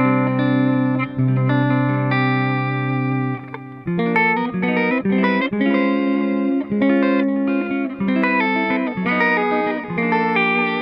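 Clean electric guitar played through the Brainworx RockRack amp-simulator plugin on its ribbon-miked cabinet setting. A chord rings for about three and a half seconds, then a run of picked notes and chords follows. The tone is thin, too thin to the player's ear for a ribbon microphone.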